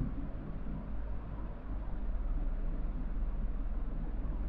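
Room tone from the narrator's microphone: a steady hiss with a low hum underneath.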